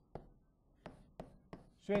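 Chalk tapping against a blackboard while writing: a few short, sharp taps spaced irregularly, then a man's voice begins near the end.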